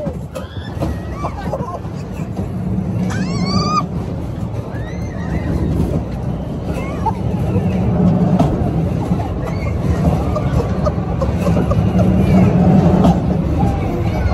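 Amusement-park ride in motion: a steady loud low rumble with air buffeting the microphone, broken by a short high-pitched squeal from a rider about three seconds in and a few fainter cries later.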